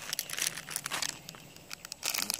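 Plastic wrapper of a packet of soft pastry crinkling as it is handled close to the microphone: a run of quick, irregular crackles.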